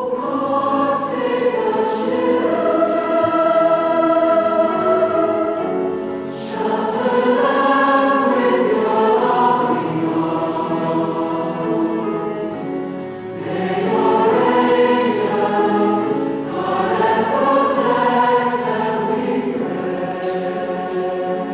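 Large combined high school choir of mixed voices singing a slow piece in full harmony, in long sustained phrases that swell and ease off briefly about six and thirteen seconds in.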